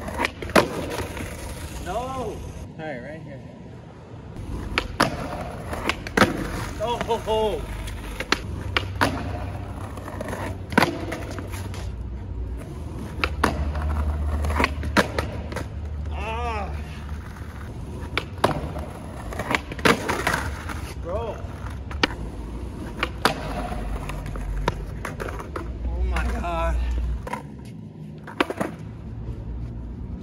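Skateboard on a concrete ledge and asphalt during repeated trick attempts: many sharp clacks of the board popping, landing and striking the ledge, with the wheels rolling on rough asphalt in between, the rolling loudest in the middle stretch.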